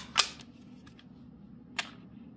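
Sharp metallic click of the magazine release being pressed on a Smith & Wesson M&P Shield 2.0 .45 ACP pistol, the magazine coming only partway out of the grip, not as forceful an ejection; a second, fainter click near the end as the magazine is handled.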